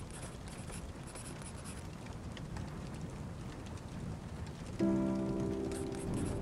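Steady rain falling on windows, with faint scattered drips. About five seconds in, soft instrumental music enters with a held chord.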